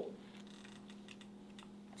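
Faint, scattered light clicks over a steady low hum.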